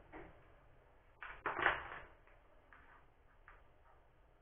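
Handling noise of small wired parts being moved about over paper on a wooden table: a brief rustle at the start, a louder rustle lasting about a second from about a second in, then a few faint ticks.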